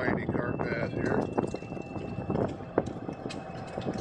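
Golf cart moving along a paved path, rattling, with a few sharp knocks.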